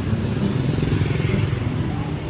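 Street traffic of motorbikes and cars driving past, their engines making a steady low hum.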